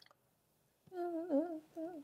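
A woman humming a short wavering tune in two brief phrases, starting about a second in.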